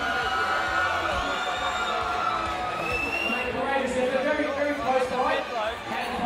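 Music playing over a venue sound system, mixed with crowd chatter and cheering from the spectators.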